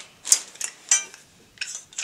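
Metal parts of a body file's holder clinking and knocking together as they are handled: a few sharp clinks, one ringing briefly about a second in, and a short rattle near the end.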